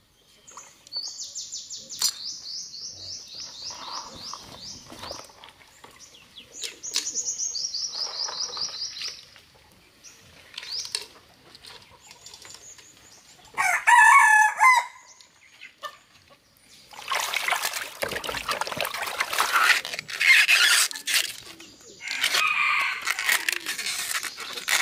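A rooster crows once, briefly, a little past the middle, the loudest sound here. Before it come two runs of rapid, high, pulsed chirping, and from about three-quarters of the way in there is dense crackling and rustling as hands peel the layers off a plant bud over a basin of water.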